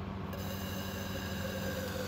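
A steady hum made of several pitched tones, with a thin high hiss and whine joining it about a third of a second in.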